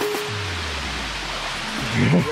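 Steady rush of a waterfall pouring into its pool, under background music whose low bass notes come in about a third of a second in.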